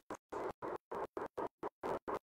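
Faint scratchy noise chopped into short, evenly spaced bursts, about five a second, with dead silence between them.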